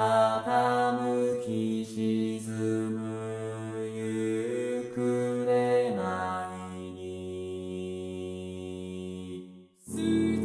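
Synthesized male-voice choir (Vocaloid voices) singing a cappella in four-part harmony, holding sustained chords. The harmony moves to a lower chord about six seconds in and breaks off briefly near the end.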